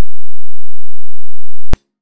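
Near silence with a faint low hum, broken near the end by one sharp click as the audio cuts off.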